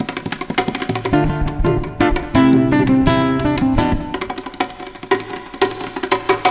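Live instrumental music: acoustic guitar played in quick picked runs, with percussion striking along. A chord rings out held through the middle.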